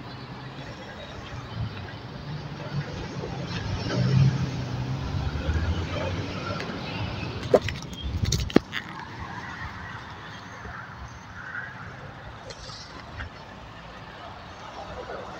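A motor vehicle's engine droning as it passes close by, loudest about four seconds in and fading out by about seven seconds. Two sharp clicks follow, about a second apart.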